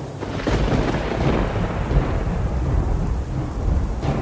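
Thunder rolling over rain. A crack breaks about half a second in, then a low rumble fades over the next few seconds.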